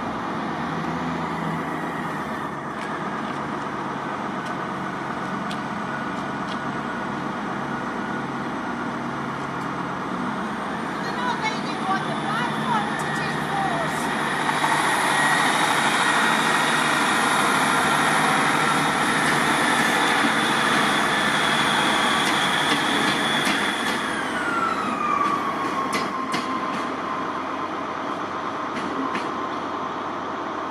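ScotRail Class 158 diesel multiple unit running. A high whine rises about ten seconds in, holds steady, then falls away about two-thirds of the way through.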